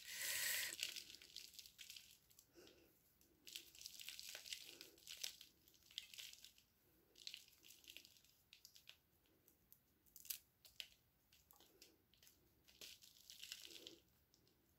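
Faint, irregular crackling and rustling as fingers pick apart a hoya's root ball, pulling roots free of fibrous potting mix.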